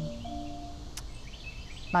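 Faint outdoor background noise with a few soft high chirps and one sharp click about a second in.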